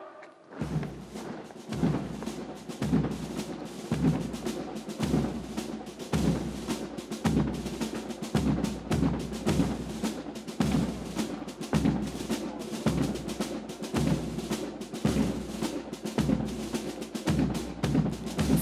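Military band playing a march, with a steady bass drum beat about once a second under the band.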